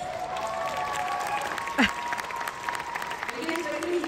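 Concert audience applauding and cheering. There is a single sharp knock just under two seconds in.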